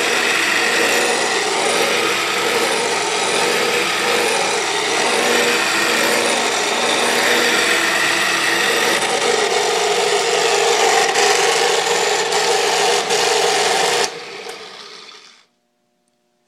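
South Bend drill press running with its quill lowered, making a loud, steady grinding noise with faint tones in it. This is the major noise that appeared right after its spindle and pulley bearings were replaced, and the owner does not know its cause. About fourteen seconds in, the noise drops sharply and dies away over the next second and a half.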